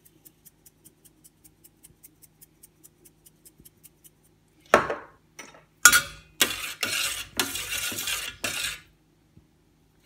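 Faint, regular ticking, about five a second, for the first four seconds; then a utensil knocks against a stainless steel soup pot and scrapes and clanks round it for about three seconds, stirring in the added pepper and basil.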